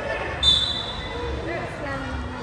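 A basketball being dribbled on the court, one bounce about every second, with a referee's whistle blown once about half a second in, a short high blast.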